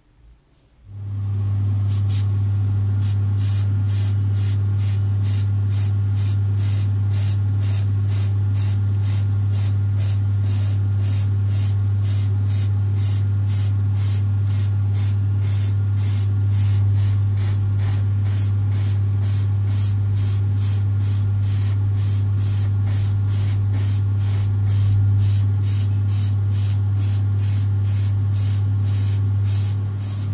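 Airbrush spraying paint, its hiss pulsing evenly about twice a second over a loud, steady low hum; both start about a second in.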